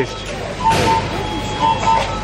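Repeated high electronic beeps in short pairs, typical of fast-food kitchen timers and fryer alarms. Partway through, a paper takeaway bag crinkles as it is handled, with voices in the background.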